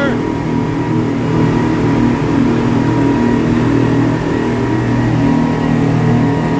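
Speedboat's engines running steadily at speed, a loud even drone heard from aboard at the open stern.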